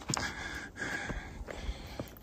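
Heavy breathing close to the microphone: two long, hissy breaths, with a few light knocks.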